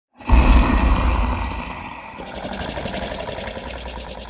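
Intro sound effect: a sudden deep rumbling rush that starts just after the beginning, is loudest in the first second and slowly fades away.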